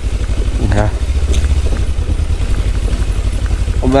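Kawasaki Ninja 300's parallel-twin engine running at low revs, a steady low pulsing, as the bike rolls slowly over a rough gravel track.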